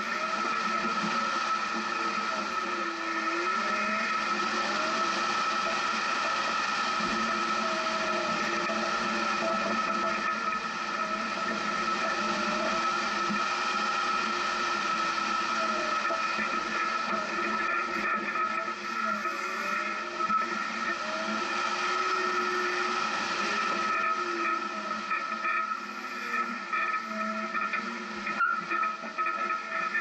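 A Jeep crawls along a rough dirt trail. Its engine and drivetrain run steadily with a constant whine, and the engine pitch rises and falls as the throttle changes. A few irregular knocks come near the end as it goes over rockier ground.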